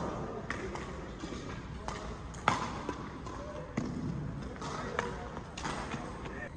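Badminton rally: sharp racket strikes on the shuttlecock, with players' shoes hitting the court in between. The loudest strike comes about halfway through.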